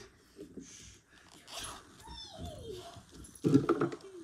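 A caged pet giving a single high whine that falls in pitch, a little past halfway through. Near the end comes a short, loud scraping noise.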